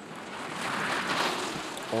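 Skis running fast over hard snow as a downhill racer and his guide pass close by: a rushing hiss that swells to a peak about a second in and then fades.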